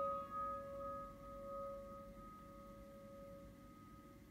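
A prepared-piano note, struck just before, rings on as a clear tone with a few overtones and slowly fades.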